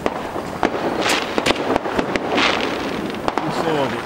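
Fireworks going off: a string of sharp bangs and pops, with longer crackling bursts about a second in and again at about two and a half seconds.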